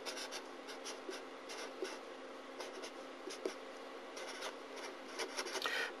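Marker pen writing on paper: a faint run of short, scratchy strokes as an algebraic expression is written out.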